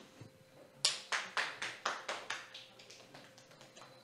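A brief run of sharp taps, about four a second, growing fainter and dying away.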